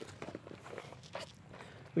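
Faint, scattered scuffs and rustles of a person shifting on dirt and gravel ground while getting under a raised truck.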